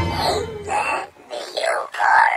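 A person's wordless drawn-out vocal sounds, like moaning, in two stretches with a short gap between them.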